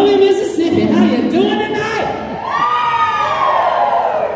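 A person's voice calling out or singing in a drawn-out way over crowd noise in a large hall. About two seconds in it becomes one long, high held note that rises and falls.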